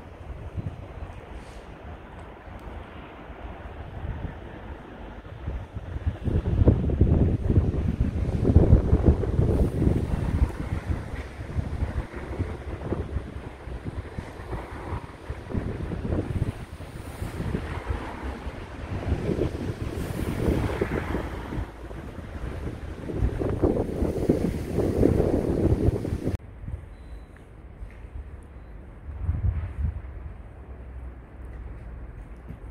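Wind buffeting the camera's microphone in uneven low gusts, strongest from about six seconds in, then dropping off abruptly near the end.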